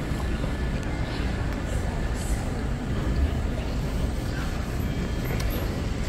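Steady low rumble of background noise in a large auditorium, with no clear single event standing out.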